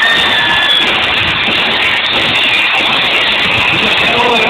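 Arena crowd screaming and cheering in a steady, loud wash of noise, with a few high shrieks standing out in the first second.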